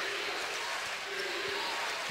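Steady arena crowd noise during a basketball game, a constant background hubbub without clear events.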